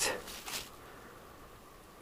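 A pause in speech: faint, even outdoor background with no clear sound of its own, and a short soft noise about half a second in.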